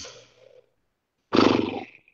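A man's short, rough, breathy vocal sound, like a creaky sigh or 'uhh', about a second and a half in, after a moment of quiet.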